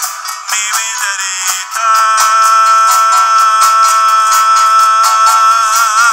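Live folk band music: strummed classical guitar over a steady hand-percussion beat, with a long, steady high note held from about two seconds in to the end.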